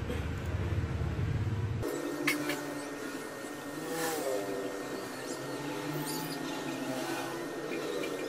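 Background noise with a vehicle engine: from about two seconds in, a pitched engine note that rises and falls.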